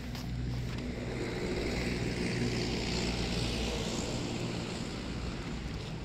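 A vehicle's engine running, its sound swelling over a few seconds and easing off again, over a steady low hum.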